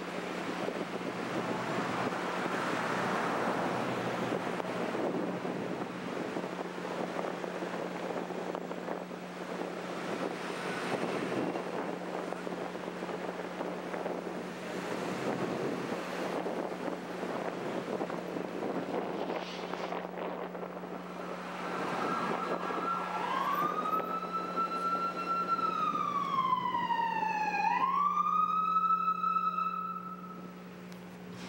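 Wind buffeting the microphone over traffic noise, then, about 22 seconds in, a police siren wails: it rises, falls slowly, and climbs again near the end.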